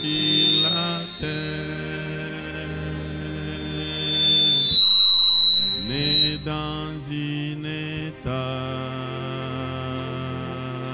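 Slow worship music of sustained keyboard chords under a high, piercing whistle of microphone feedback. The whistle holds one pitch, swells, and is loudest for about a second around the middle before dropping away.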